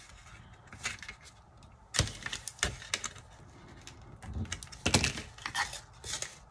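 Hand-handling noise on a work table: a few sharp taps and knocks of cardboard and frame pieces being pressed and moved, the loudest about five seconds in.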